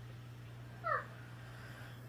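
A cat meowing once, a short meow that falls in pitch, about a second in.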